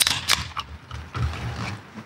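Aluminium drink cans being handled and knocked together for a toast: a few sharp clicks and knocks in the first moment, then quieter rubbing and handling.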